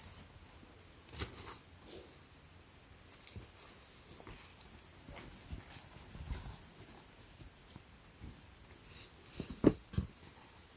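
Cotton T-shirts being handled and spread flat on a table: soft, intermittent fabric rustles and light scuffs, with one sharper short knock near the end.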